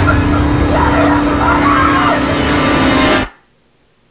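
Movie trailer soundtrack playing loud: dense dramatic music and sound effects with a steady low drone. It cuts off abruptly a little over three seconds in, leaving near silence.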